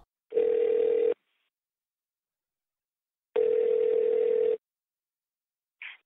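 Telephone ringback tone heard over a phone line as an outgoing call goes through: two rings, each about a second long, about three seconds apart.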